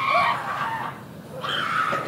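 High-pitched wailing and shrieking voices, held and wavering, from actors vocalizing during a drama workshop exercise. The sound fades about halfway through and starts up again near the end.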